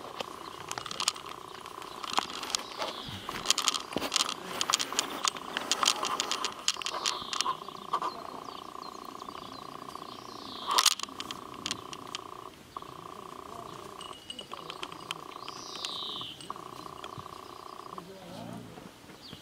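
Month-old saluki puppies growling and scuffling as they play-fight, with a short high squeal about eleven seconds in and another near the end.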